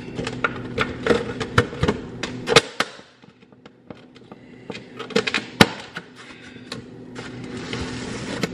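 Thin aluminium foil pan being closed with its lid: crinkling foil and sharp plastic clicks as the rim is pressed shut. The clicks come in a dense run for the first few seconds, stop briefly, and return in a shorter cluster past the middle.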